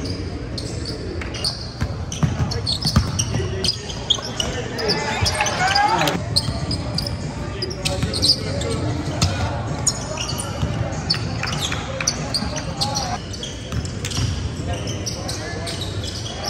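Live basketball play in a gymnasium: the ball bouncing on the hardwood floor in short sharp knocks, short high squeaks of sneakers, and scattered voices of players and spectators, all echoing in the hall.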